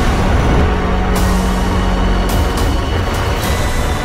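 A Saturn V rocket launch: the engines' loud, deep rumble is mixed with a tense film score.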